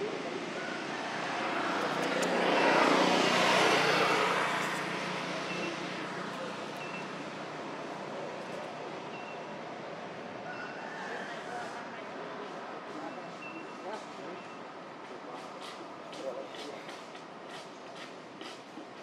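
A vehicle passing by: its noise swells over about two seconds, peaks and fades away by about six seconds in. Afterwards a steadier outdoor background remains, with faint short high chirps repeating.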